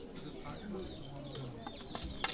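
A bird cooing faintly, in a few low, steady notes, over quiet murmuring voices.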